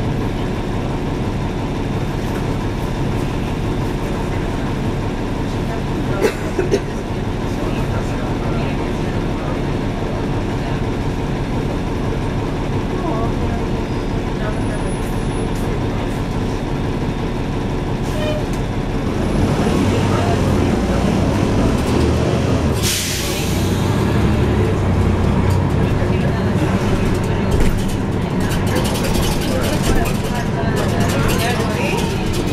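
Diesel engine of a 2012 NABI 416.15 (40-SFW) transit bus heard from the back seats, running steadily, then louder from about two-thirds of the way in. A short sharp hiss of air from the bus's air brakes comes a little later.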